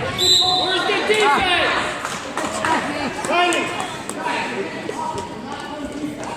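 Sounds of an indoor futsal game on a wooden gym floor: ball thumps and short shoe squeaks, with shouting voices echoing in the hall.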